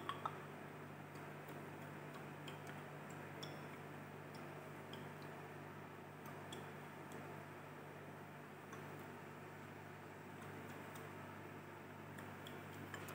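Quiet lab room tone: a steady low ventilation hum with faint, irregularly spaced light ticks.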